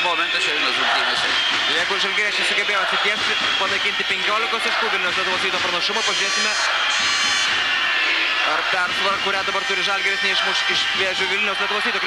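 Basketball arena crowd noise and voices during live play, with a ball bouncing on the hardwood court.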